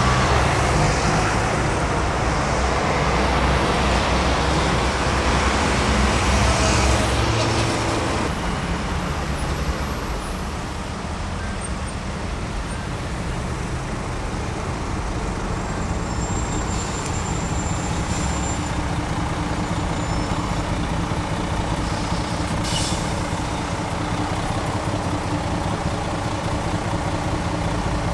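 City street traffic: a diesel coach and other vehicles driving past, with engine sound and road noise loudest over the first eight seconds, then steadier. A brief sharp hiss about 23 seconds in.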